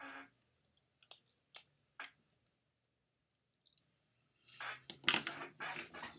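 Scattered small clicks of lips smacking and parting over freshly applied liquid lip paint, followed near the end by about a second and a half of louder rustling and scuffing.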